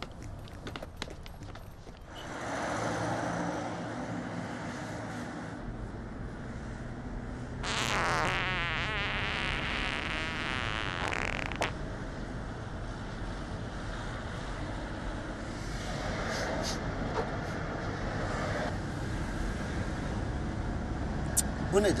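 Steady running noise of a vehicle, heard from inside the cabin, with a louder wavering sound lasting about four seconds near the middle.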